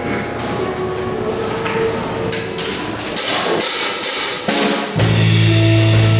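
A live worship band plays an instrumental introduction. Held chords come first, then cymbal strikes from about three seconds in, and a deep bass note enters about a second before the end.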